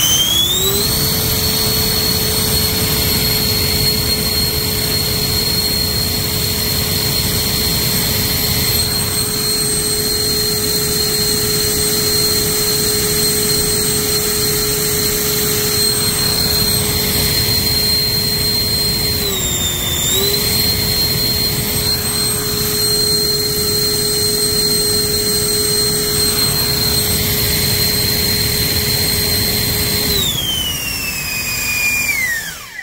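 HSD 120 mm ten-blade electric ducted fan with a 52-size, roughly 640 kV motor, run on a 12S battery and held at high throttle for a static thrust test. It gives a loud, steady whine over rushing air, rising into place in the first second. The pitch dips briefly and recovers about two-thirds of the way through.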